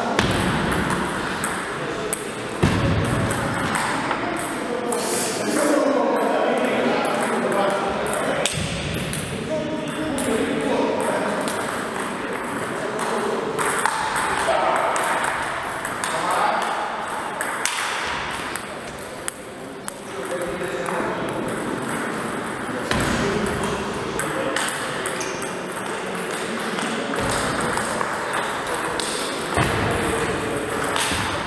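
Table tennis rallies: repeated sharp clicks of the ball striking the paddles and the table, with people's voices talking in the background throughout.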